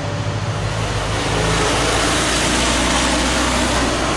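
A box delivery truck driving past close by on the street, engine running and tyres on the road, getting louder over the first second and a half and then holding steady.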